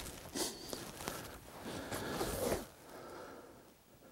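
Rustling of clothing and gear as a hunter moves with his rifle and shooting sticks, in several bursts over the first two and a half seconds, then quieter.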